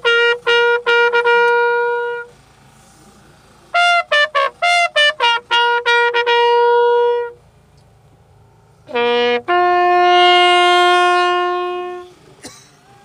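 A brass horn playing loud call-like phrases: a run of quick short notes ending in a long held note, twice over, then after a pause a short low note leading into another long held note.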